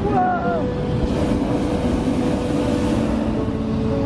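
Hot-air balloon propane burner firing: a steady rushing blast that comes in about a second in, with steady background music underneath.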